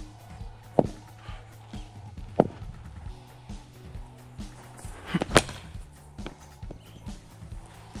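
A cricket bat strikes a thrown cricket ball with a sharp crack about five seconds in, as a quick double knock, and there are two fainter knocks earlier. Background music with a low steady hum runs underneath.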